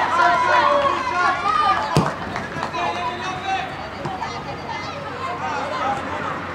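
Women footballers shouting and calling out to each other during play, loudest in the first two seconds and then fainter, with one sharp knock about two seconds in.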